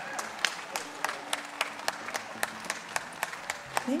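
Audience applause after an orchestral song ends, with sharp, evenly spaced handclaps, about four a second, standing out over the wider clapping.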